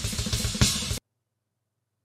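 Yamaha drum kit playing a fast blast beat, with kick drums, snare and cymbals. It cuts off suddenly about halfway through.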